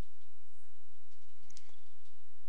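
A steady low electrical hum with a single sharp click and a soft low thump about one and a half seconds in.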